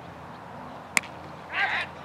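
A single sharp crack of a cricket ball striking about a second in, followed by a loud shouted appeal from a fielder near the end.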